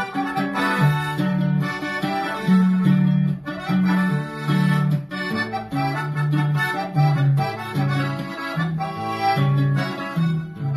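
Conjunto music: a diatonic button accordion playing a lively melody over a strummed acoustic guitar with a bass line that moves note by note.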